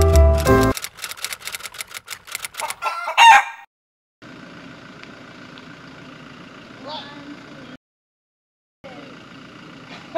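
Piano music cuts off, then a quick run of sharp clicks leads into a short, loud rooster crow about three seconds in. After that comes faint, steady outdoor background noise that drops out briefly twice.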